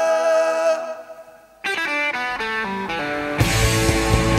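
Rock band music: a held note fades into a brief near-gap, then a distorted electric guitar plays a stepping single-note riff alone, and the drums and bass come in loudly near the end.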